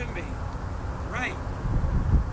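Wind buffeting the microphone outdoors, a steady low rumble, with a short high-pitched sound a little past a second in.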